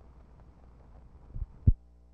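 Two low thumps about a second and a half in, the second one louder, as a splice in the 16mm news film runs past the sound head. After them the soundtrack drops to a steady electrical hum.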